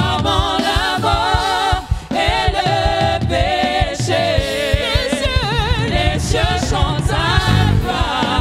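Live gospel worship music: several voices singing with vibrato over a steady low drum and bass beat.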